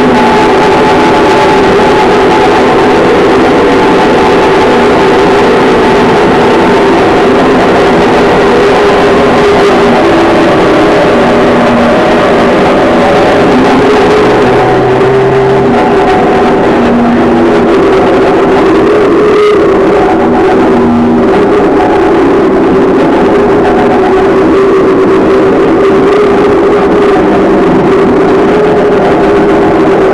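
Live noise music: a loud, unbroken wall of dense noise over steady droning tones, with short held lower pitches coming and going in the middle.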